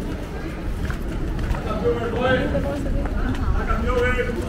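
Voices of people chatting, with a low wind rumble on the microphone.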